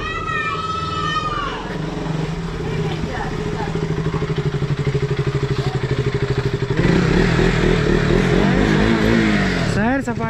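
Motorcycle engine running at low speed with a pulsing beat as the bike rolls up. It gets louder about seven seconds in.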